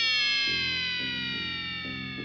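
Intro jingle sound effect: a bright synthesized tone rich in overtones that starts suddenly and glides slowly downward in pitch while fading, with soft low notes underneath.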